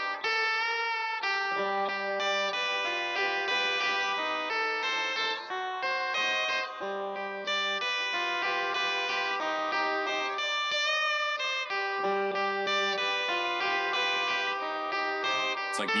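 Fender Telecaster electric guitar playing a repeating riff of single notes left to ring into each other, the phrase coming round about every five seconds with a low note each time.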